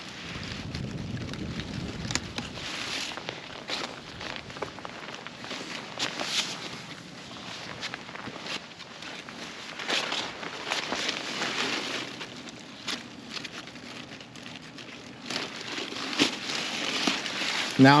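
Zucchini plants' large leaves and stems rustling and crackling as they are pushed aside and handled during picking, with scattered small snaps and clicks.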